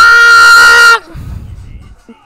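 A high-pitched, wailing cry in a puppet character's voice, held on one long note that cuts off suddenly about a second in. A faint low rumble follows.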